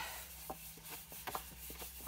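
Faint handling of patterned paper sheets: a few light ticks and rubs as the paper is shifted and pressed against other sheets, over a steady low hum.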